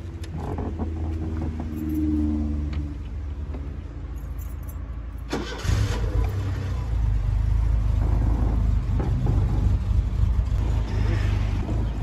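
Ford Corcel's four-cylinder engine started with the ignition key and running. About five and a half seconds in, after a sharp click, it runs much louder and keeps running steadily.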